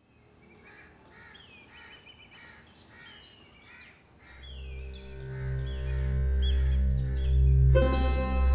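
Birds chirping in short repeated calls for the first few seconds. About halfway through, a low swelling drone of background music comes in over them, joined near the end by plucked string notes.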